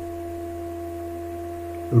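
A steady, unchanging hum made of a low drone and a clear held tone.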